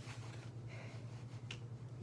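Steady low hum of a room fan, with two sharp clicks, one at the start and one about a second and a half in.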